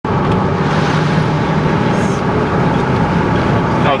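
Steady engine and tyre noise from a moving car, heard from inside the vehicle, with a low hum under the road noise.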